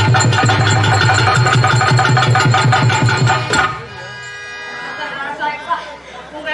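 Dance accompaniment for a Tamil stage drama: a fast hand-drum beat with harmonium, which stops abruptly about three and a half seconds in. A held harmonium note lingers and fades, and a voice starts speaking near the end.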